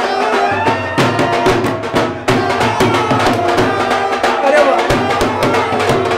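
Dhol drum beaten in a steady, quick rhythm, with voices singing along over the beat.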